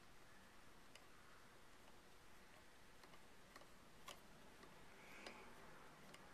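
Near silence: room tone with a few faint, short metal clicks of small parts being handled at the front end of a rifle, at the castle nut and its little screw.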